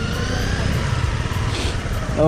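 Motorcycle riding at low speed: the Honda CBR250R's single-cylinder engine running steadily under a rumble of wind and road noise, with a faint whine rising slightly in pitch.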